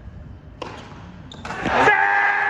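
A tennis ball struck once about half a second in, a single sharp pop in the hall. From about a second and a half in, a loud shout close to the microphone rises to its loudest at the very end, cheering the point.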